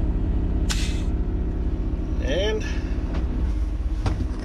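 Semi-truck diesel engine idling steadily, heard from inside the cab; about a second in, a short sharp hiss of air as the air-shifted PTO is switched off.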